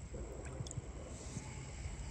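Light water swishing and dripping as a bass swims off at the surface, over a steady low rumble on the microphone.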